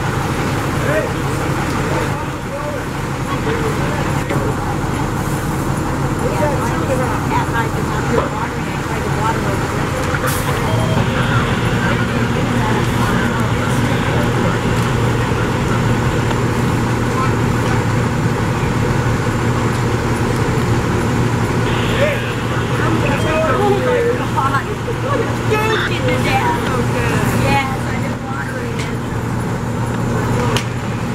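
Fire engine's engine running steadily, its low drone growing louder about ten seconds in, with indistinct voices calling over it.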